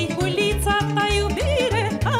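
Romanian folk music played live by a taraf band: a fast, ornamented melody over a steady bass beat.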